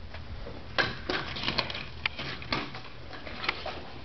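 A handful of irregular light clicks and knocks, spaced unevenly over a few seconds, above a low steady hum.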